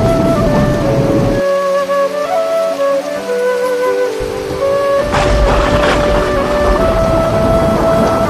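A slow flute melody plays throughout over heavy rain. The rain drops out for a few seconds after the first second and a half and comes back with a low rumble about five seconds in.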